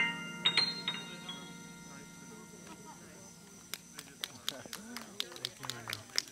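A digital stage piano plays its final high notes, which ring out and fade over about two seconds. From about four seconds in, a small group of listeners claps in scattered, uneven claps.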